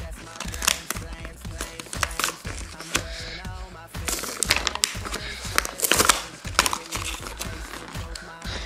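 Plastic blister packaging of a toy pack crackling and crinkling in short, irregular bursts as it is handled and torn open, with faint music behind it.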